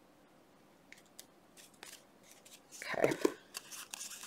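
Small scissors snipping the rounded corners off a thick playing card: a few short, crisp snips from about a second in, then a louder burst of handling noise around three seconds in.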